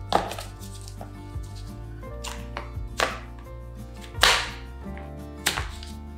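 Background music with a steady bass, broken by a few sharp plastic knocks and taps as a white cube-portioning grid is worked out of a plastic food container; the loudest knock comes about four seconds in.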